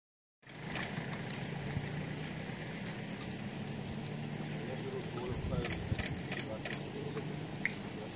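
A vehicle engine idling with a steady low hum, with a few sharp clicks in the second half.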